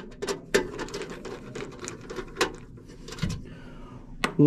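Hand Phillips screwdriver backing screws out of the sheet-metal fan housing: a run of small metallic clicks and scrapes, with a few sharper clicks near the start and again about two and a half seconds in.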